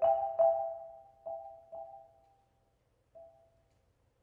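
Malletech concert marimba struck with mallets: the same two-note chord is played about five times, each stroke ringing and fading. The strokes grow quieter and sparser, with a pause before a last faint stroke about three seconds in.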